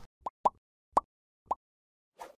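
Four short pop sound effects spaced about a quarter to half a second apart, each a brief pitched blip with silence between, of the kind added to an animated subscribe-button overlay.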